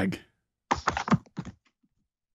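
Quick run of computer-keyboard clicks, about eight keystrokes in under a second, slightly muffled as if heard through a video-call connection.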